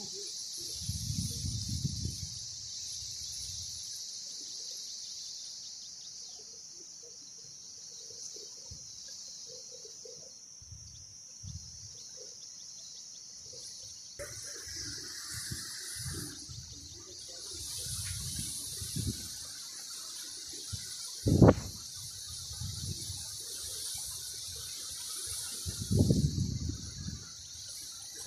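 A steady, high-pitched chorus of insects from the reed bed. Low thumps come and go over it, and one sharp knock about three-quarters of the way through is the loudest sound.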